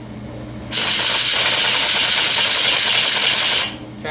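Pneumatic impact tool running for about three seconds, mostly a loud hiss of exhaust air, starting a little under a second in and stopping shortly before the end. It is driving a Harley Twin Cam cylinder stud down through a head bolt and socket with the trigger feathered, just seating the stud rather than torquing it.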